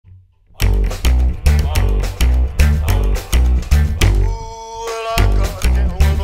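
Rockabilly music led by a slapped upright bass (Oriente HO-38): a driving walking line of deep plucked notes with percussive slap clicks between them. It starts about half a second in, drops out to a few held notes around four seconds in, and picks up again about a second later.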